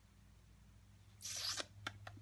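A clear acrylic stamping block shifted on paper: a brief scuffing rustle about halfway through, followed by two light clicks, over a low steady hum.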